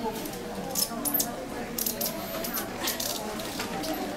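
Low murmur of audience voices in a hall, with a few short, sharp hisses scattered through it.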